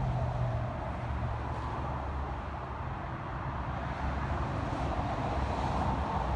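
Steady outdoor background noise: a continuous low rumble with a light hiss above it, and no distinct events.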